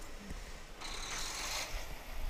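Semi truck engine running low and steady in the cab as the truck rolls slowly, with a brief hiss lasting just under a second about a second in.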